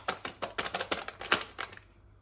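Foil bag of cake mix crinkling and rattling as it is shaken out over a plastic mixing bowl, a rapid run of irregular clicks that stops near the end.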